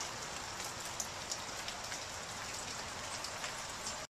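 Steady light rain with scattered drips, the water falling from a deck's under-deck drainage outlets.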